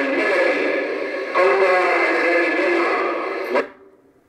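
A man's voice chanting or reciting in long, drawn-out melodic phrases into a microphone, cutting off abruptly about three and a half seconds in.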